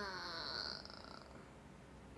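A young woman's drawn-out vocal sound, falling in pitch and fading out within the first second, then faint room tone.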